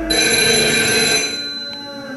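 A bright ringing like a telephone bell starts suddenly over sustained low tones. The brightest part fades after about a second and a half, leaving a thin high tone.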